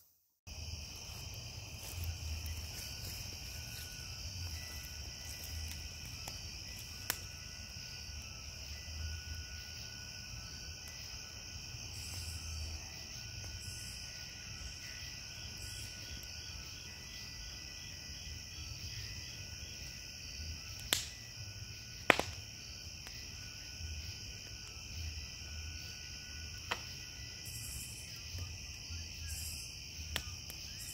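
Steady chorus of night insects with high, continuous trilling, and a few sharp pops from a wood campfire, two close together about two-thirds of the way through.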